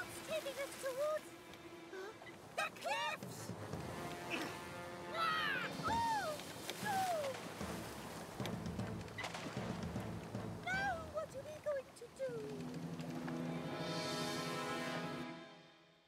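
Cartoon soundtrack of background music over a steady wash of rough sea. Children's frightened cries and exclamations come and go throughout. The music swells near the end and then fades out.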